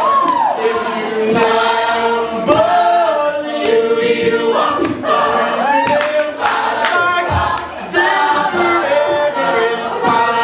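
A cappella group singing a pop song: a male lead voice over full choral backing, with sharp percussive hits recurring throughout.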